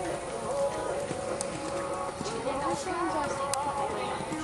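Hoofbeats of a pony cantering on arena sand, with voices and music going on behind them.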